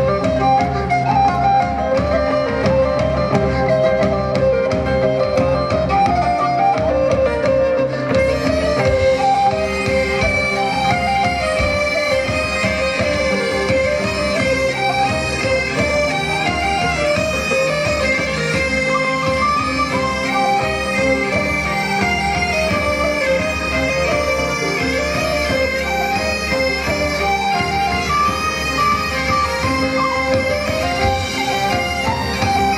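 Live Celtic folk music for an an dro dance: a reedy, bagpipe-like wind melody over a steady drone. The sound grows brighter and fuller from about eight seconds in.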